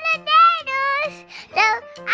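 A young child's high, sing-song voice in several short phrases over background music with steady low notes.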